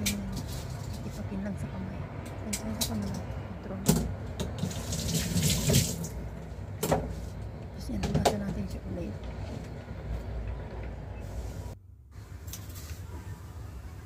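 Kitchen knife cutting lotus root into chunks by hand, the pieces dropping into a plastic colander, with a few sharp knocks. A short spell of running tap water comes about five seconds in.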